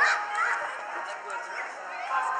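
Children's voices and calls, with a short, high yelp right at the start.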